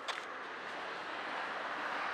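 Steady outdoor traffic noise, a motor vehicle running at a distance, growing slightly louder toward the end.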